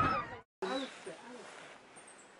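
Shouting voices cut off abruptly about half a second in, followed by quiet forest air with a few faint, short calls.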